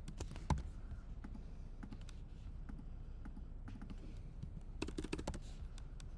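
Scattered keystrokes on a computer keyboard, with a quick run of several key presses about five seconds in.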